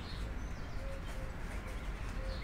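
Faint, short bird calls over a low, steady background hum.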